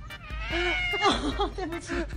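Domestic cat meowing: one long drawn-out meow, then a quick run of short meows.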